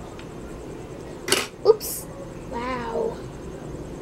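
Two sharp knocks about half a second apart, like dishes or a food container being handled at the table, then a short call that rises and falls in pitch.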